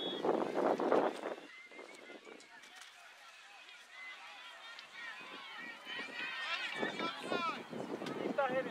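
Distant overlapping voices of players and spectators calling out across a youth soccer field. The calls are loudest in the first second and thicken again with several higher-pitched voices near the end.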